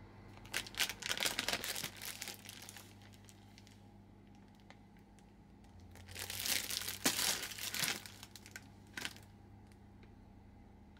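Plastic food packaging crinkling as it is handled, in two bursts of a couple of seconds each: one about half a second in, the other about six seconds in. There is a short click near the end.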